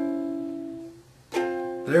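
Ukulele chords strummed on nylon strings: one chord rings and fades, then a second chord is strummed a little over a second in and rings until the end.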